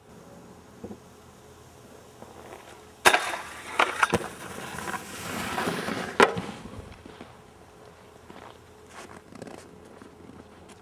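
A snowskate deck cracks down hard, scrapes for about three seconds, then cracks down once more.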